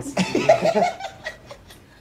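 People laughing together: a burst of laughter in the first second that fades out in short trailing chuckles by about a second and a half in.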